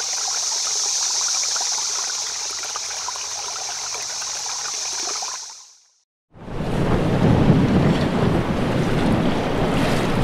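A steady trickling, running-water hiss fades out about six seconds in. After a short silence, louder wind buffets the microphone over open water.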